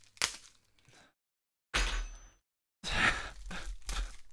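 Plastic food wrapper crinkling and tearing as a packaged dessert is unwrapped by hand, in three short bursts, the longest near the end.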